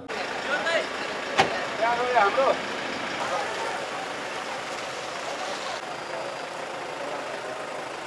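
Outdoor street ambience: a steady hum of vehicle engines and traffic, with a few voices talking in the background early on and a single sharp click about a second and a half in.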